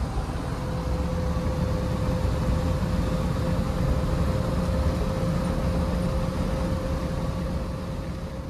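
Inside the cabin of a 1986 Jeep Grand Wagoneer cruising at highway speed: a steady, loud low rumble of wind, road and engine noise with a faint constant hum. It is a little loud because the back window is open.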